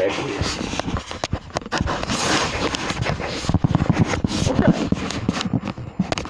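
Loud rubbing, scraping and knocking against a phone's microphone as the handheld phone is turned around and moved.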